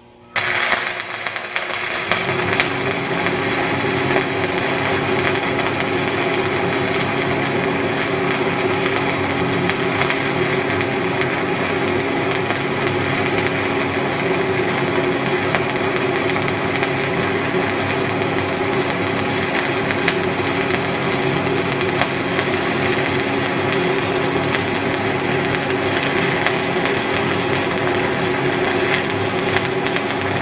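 MIG welding arc on a 4-inch pipe coupon, striking about a third of a second in and then burning steadily with a continuous sizzle over a steady low tone.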